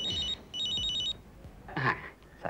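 Desk telephone's electronic ringer trilling in two short bursts, each about half a second of a fast warble between two high tones. The call is then answered.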